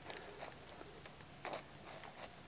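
Faint clicks and scrapes of small hands tugging at the plastic battery plug of a 1/18-scale RC truck, with one slightly louder knock about one and a half seconds in.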